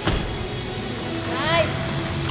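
A single thud of a gymnast's feet landing on a balance beam over steady arena noise, then about a second and a half in a person shouts one short whoop that rises and falls in pitch.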